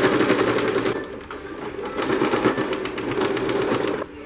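Computerized domestic sewing machine stitching a cushion seam down to the corner with a rapid, even stitch rhythm. It eases off about a second in, picks up again around two seconds, and stops at the end.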